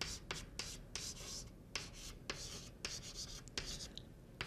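Chalk writing on a blackboard: a faint, irregular run of short scratches and taps as the chalk strokes out letters.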